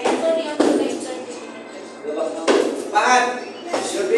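Children's voices shouting and calling out in short bursts, with a few thumps.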